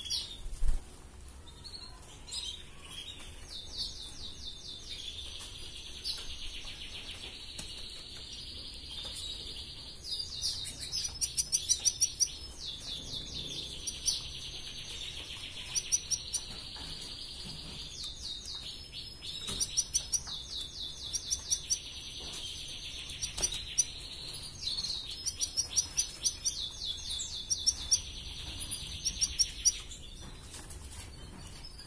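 Red canary singing a long, continuous rolling trill, broken several times by quick runs of sharp, loud chirps. A single low thump comes about a second in.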